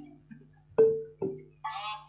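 Sundanese gamelan accompanying a wayang golek play: two struck bronze notes about half a second apart, the first higher, each ringing and fading, over a steady low tone.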